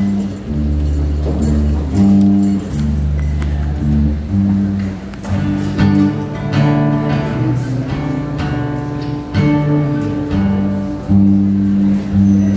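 Guitars playing a slow run of held chords, the chord changing about every second, with no singing.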